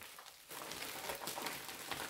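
Thin clear plastic bag crinkling and rustling in irregular crackles as it is pulled and worked over a mushroom grow block, starting about half a second in.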